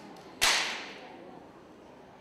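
A single sharp crack about half a second in, dying away over about half a second.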